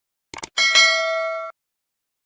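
A few quick clicks, then a bright bell ding with several ringing tones that lasts about a second and cuts off abruptly: the notification-bell sound effect of a subscribe animation, marking the bell being pressed.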